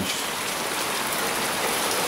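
Heavy rain pouring down, a steady even hiss of downpour.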